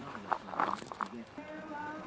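A few soft knocks and rustles of handling among courgette leaves, then, about one and a half seconds in, faint background music with held notes.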